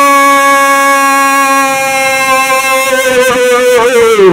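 A voice holding one long, loud, high note, steady in pitch, that dips and falls away near the end. A lower note is held beneath it for the first couple of seconds.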